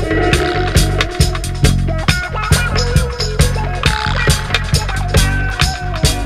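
Roots reggae music in an instrumental stretch of the track: a steady bass line and drums keeping a regular beat, with short melodic instrument lines over them and no singing.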